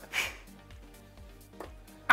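Faint background music with a short breathy sound near the start. A single dart then strikes a bristle dartboard with a brief click about one and a half seconds in.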